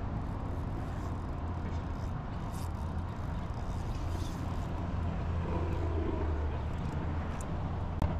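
Steady low outdoor rumble with an even background hiss and a few faint ticks.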